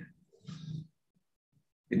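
A man's short, low, wordless vocal sound about half a second in, then near silence until he speaks again.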